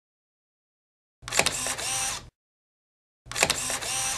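Camera shutter sound effect, a sharp click followed by about a second of whirring, played twice about two seconds apart with dead silence between.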